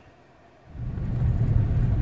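Nearly silent for the first moment, then a steady low rumble of a Mitsubishi Outlander PHEV heard from inside the cabin while it drives, with its petrol engine running as a generator to recharge the empty battery.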